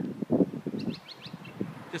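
A small bird chirping a quick run of about five short high notes about a second in, with a brief low knock or rustle just before.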